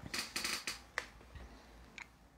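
Handling noise on a clip-on microphone pinned to a robe: cloth rustling and scraping against it as the wearer leans and moves, with a sharp click about a second in and another near the end.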